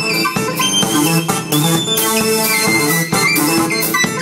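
Live electronic music: a synthesizer keyboard playing a melody over a drum beat, with a high synth line moving up and down in steps.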